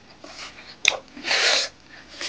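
Watermelon being bitten and eaten close to the microphone: a sharp crisp bite about a second in, then a loud half-second slurp of the juicy flesh.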